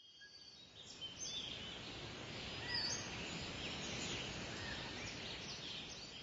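Birds chirping repeatedly over a steady hiss of outdoor ambience, fading in over the first couple of seconds.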